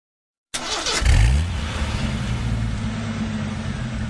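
Car engine starting: a brief crank about half a second in, catching at about a second with a quick rev that is the loudest part, then settling into a steady idle.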